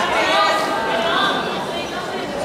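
Indistinct chatter of many voices talking at once in a large sports hall, a steady murmur with no single voice standing out.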